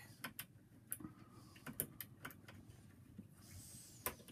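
Faint, irregular light clicks of a lock-pick tool being oscillated in a Brisant high-security Euro cylinder lock. This is picking in progress, with the cylinder opening just afterward.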